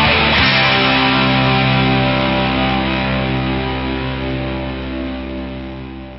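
Pop punk band's electric guitars and bass ending the song: the last hits of the full band, then about half a second in a final chord is held and rings out, slowly fading.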